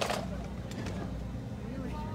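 Indistinct murmur of voices from a seated crowd over a steady low rumble, with one sharp knock right at the start.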